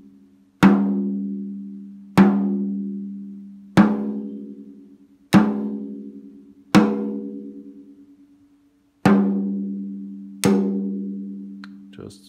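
A drum head tapped with a drumstick near its edge seven times, about one and a half seconds apart with one longer pause. Each tap rings out and fades with a steady low pitch near 200 Hz and higher overtones above it. These are single lug-pitch taps for tuning the drum with an electronic tuner.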